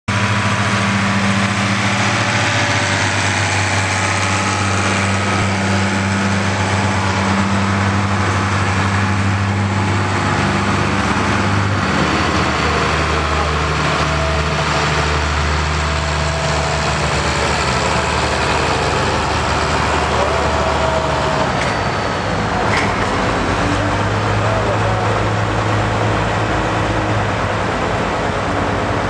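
John Deere 4020 tractor's six-cylinder engine running steadily, its speed stepping up and down a few times.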